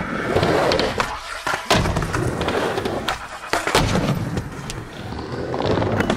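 Skateboard wheels rolling and grinding across a skate ramp and bowl, with several sharp clacks of the board striking the surface.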